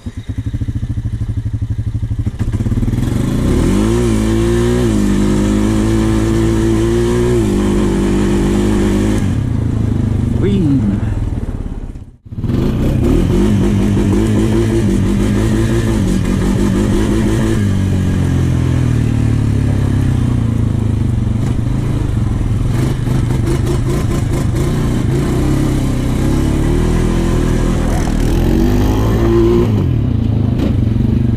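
ATV engine under way with the throttle worked, its pitch rising and falling with revs. The sound drops out sharply for a moment about 12 seconds in, then carries on, with some clatter near the end.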